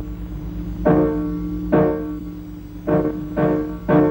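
Slow background piano music: five single notes struck about a second apart, each ringing out and fading over held low tones.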